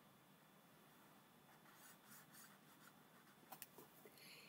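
Faint strokes of a felt-tip highlighter rubbing back and forth on paper as it shades in an area, followed by two light clicks near the end.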